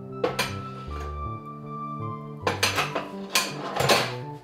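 Dishes and utensils clinking as they are put into a kitchen sink: a couple of clinks about a quarter second in, then a quick run of them in the last second and a half. Background music plays under them.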